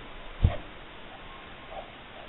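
A single dull thump about half a second in, as hands reach in and handle the crochet work on the cloth-covered table, over faint background noise.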